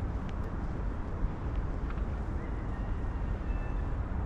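Steady outdoor ambience: a low rumble of wind on the microphone and distant traffic, with a few faint high chirps and ticks over it.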